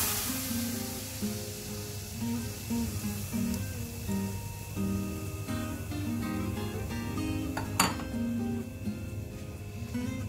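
Background acoustic guitar music of short plucked notes, over a faint sizzle from milk heating in a hot pan; the hiss of the milk being poured fades out in the first second or so. A single sharp click a little before the end.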